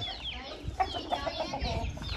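Chickens clucking: a quick run of short, soft clucks about halfway through, with faint high chirps from chicks.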